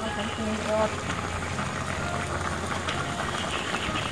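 A pan of Thai spicy pork lung curry boiling, with a steady bubbling that runs on over a low hum.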